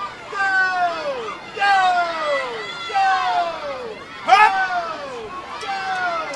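Spectators at a swim race yelling encouragement: a string of high-pitched shouts, each falling in pitch, about one a second, the loudest about four seconds in, over crowd noise.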